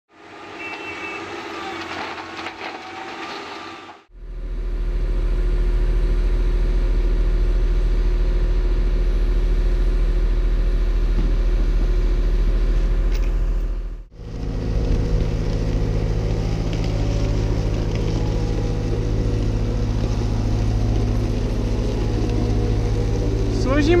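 Wheeled excavator diesel engines running steadily and close by, with an even low drone. The engine note changes sharply at two cuts, about four seconds in and about fourteen seconds in. The first few seconds hold a quieter sound with shifting higher tones.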